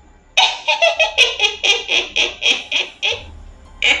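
High-pitched, rapid cackling laughter sound effect, about six 'ha's a second. It stops about three seconds in and breaks out again briefly near the end: the hideous, ghostly laughter of the goddess's creatures.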